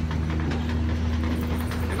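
Power wheelchair's electric drive motors humming steadily as the chair rolls along, one steady tone over a low drone.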